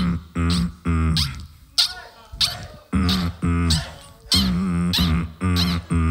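Beatboxing into a handheld microphone: a rhythmic run of short, held, pitched vocal bass notes, some wavering in pitch, with sharp mouth clicks and snare-like hits between them.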